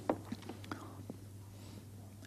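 Quiet pause with a low steady hum and a few faint, brief mouth clicks and breath noises close to a microphone.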